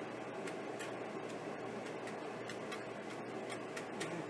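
Plastic spatula scraping dried egg off a food dehydrator's mesh tray, the crisp egg flakes cracking and clicking irregularly, several ticks a second, over a steady low hum.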